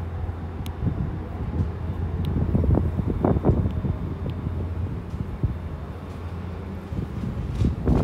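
An air conditioner running on high: a steady low hum with a rush of air across the microphone.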